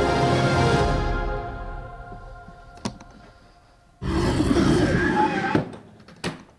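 Film trailer soundtrack: music fades out over a couple of seconds and a single click follows. About four seconds in comes a sudden loud burst of noise from a leather suitcase being handled, lasting about a second and a half, with a thunk or two after it.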